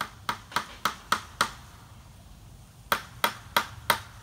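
Hammer blows driving nails into a wooden gate frame: a run of about six sharp strikes at roughly three a second, a pause, then four more at the same pace.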